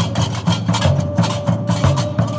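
Gnawa percussion: hand-held iron qraqeb castanets clattering in a fast, steady rhythm over the regular low strokes of large double-headed drums.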